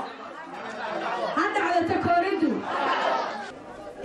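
Indistinct voices talking, softer than a speaker on the microphone, like chatter among several people.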